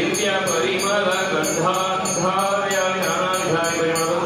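Priests chanting Sanskrit Vedic mantras: a continuous sing-song recitation that holds and bends its notes.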